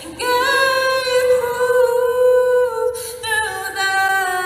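A woman singing unaccompanied: long held notes that slide and step between pitches, with a short break about three seconds in.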